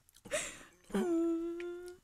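A person humming a steady, closed-mouth "mmm" for about a second, preceded by a short breathy sound.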